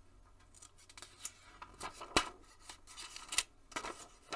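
Glossy magazine page being handled and turned by hand: a run of crisp paper crackles and rustles, with the sharpest snaps a little after two seconds in and again near the end.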